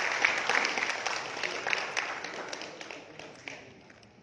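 Audience applauding, with many individual claps, fading away over the last two seconds.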